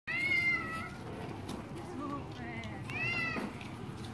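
A small pet's two high, drawn-out cries, one just after the start and a shorter one about three seconds in, with faint voices of people around.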